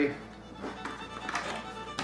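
Light clicks and rattles of plastic small hive beetle traps being handled and lifted out of a wooden toolbox.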